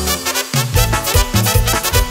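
Instrumental passage of a Mexican tierra caliente dance song: the band plays on a steady, pulsing bass beat, with the low end dropping out briefly about half a second in.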